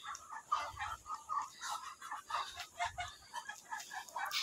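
Small flock of yard poultry calling softly: a run of short, irregular notes, several a second.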